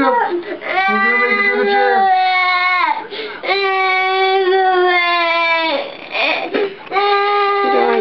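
A young boy crying in three long, drawn-out wails, each held at a steady pitch for about two seconds or more, with short breaths between them.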